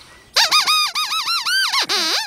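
A puppet dog's squeaker voice squeaking out a question in a quick run of high, warbling squeaks, starting about a third of a second in.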